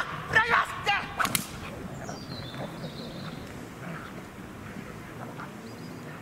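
A loud shouted dog-sport command ('Los!') and more shouting, with a few sharp cracks in the first second and a half, as a young dog is sent onto a decoy in a bite suit. Then only low outdoor background.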